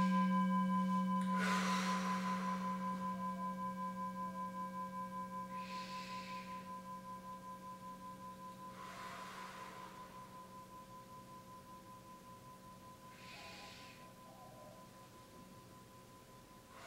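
Meditation bowl bell, struck just before, ringing and slowly fading, its hum pulsing as it dies away; it is sounded to open the meditation period. Soft breaths come over it every few seconds.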